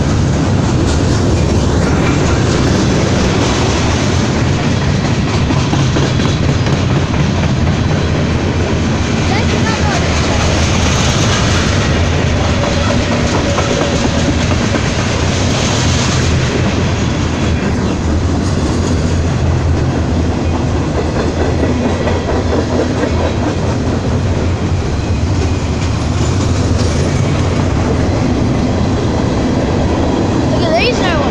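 Boxcars and covered hoppers of a Norfolk Southern freight train rolling past close by. Their steel wheels make a loud, steady rumble on the rails that does not let up.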